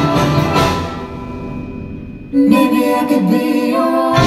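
A percussion ensemble of marimbas and other mallet keyboard instruments, with drum kit and cymbals, playing a piece with sustained pitched tones. The sound thins out and softens over the first two seconds, then a new louder passage comes in abruptly a little past the middle, and the full ensemble enters near the end.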